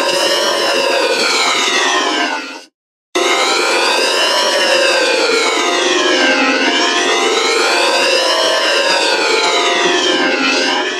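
Effect-processed logo sound for a Burger King logo animation: a stack of tones gliding up and down together in slow siren-like sweeps, each rise or fall taking about two seconds. It cuts out briefly near the three-second mark and then starts again.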